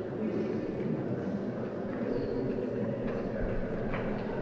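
Steady low rumbling background noise with no distinct events standing out.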